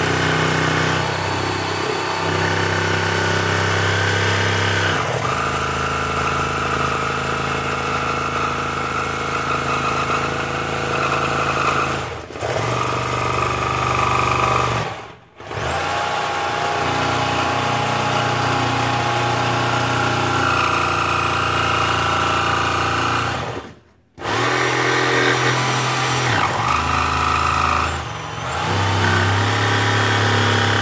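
Corded jigsaw with a fine-tooth metal-cutting blade cutting through a plexiglass sheet, the motor running steadily and easing off or stopping briefly four times. The cut runs too hot, so the acrylic melts and welds itself back together behind the blade.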